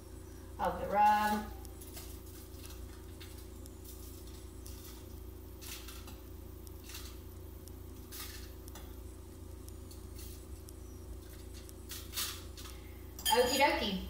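Light, scattered clinks of a metal spoon against a small glass bowl as oil is spooned over a chicken in a foil pan, over a steady low hum.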